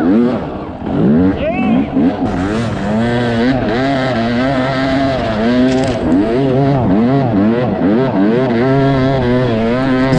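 Dirt bike engine revving hard in repeated surges, its pitch rising and falling about once a second as the throttle is worked climbing through deep snow.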